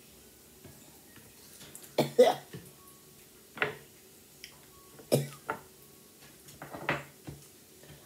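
A woman's short, stifled coughs and throat sounds, four or so spread out from about two seconds in, brought on by a sauce she finds a little strong.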